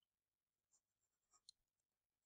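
Near silence, with a few faint ticks of a stylus on a drawing tablet as handwriting is written.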